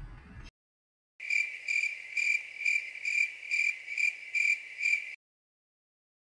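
Edited-in cricket chirping sound effect: a shrill, steady trill pulsing about twice a second for about four seconds, with dead silence either side. It is the stock comedy cue for an awkward silence.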